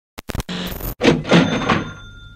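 Intro logo sound effect: a few quick clicks and a short rasping burst, then a louder hit whose bright bell-like ring fades slowly.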